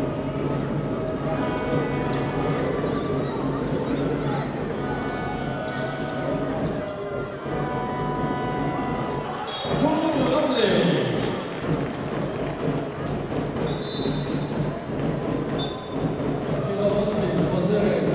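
Indoor basketball game sound: the ball dribbling on the hardwood under arena music that fades out about halfway. About ten seconds in the crowd's voices swell, and short referee whistle blasts come near then and twice more a few seconds later as play stops.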